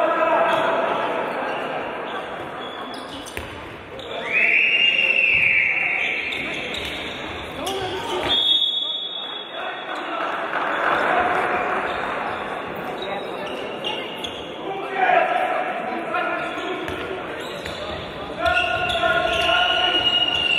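Handball bouncing on a wooden court in a large, echoing sports hall during play. A referee's whistle gives two long, steady, high blasts, about four seconds in and again near the end.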